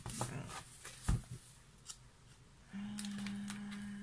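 Large sheets of scrapbooking paper being handled and turned over, with rustling and a few sharp taps and knocks in the first second or so. Later a woman hums one steady "mm" note for about a second.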